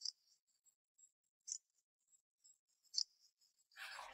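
Near silence broken by three faint, short, high-pitched clicks about a second and a half apart. Background noise rises just before the end.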